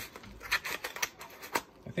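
A handful of short crinkles and taps from a yellow mailing package being handled on a table.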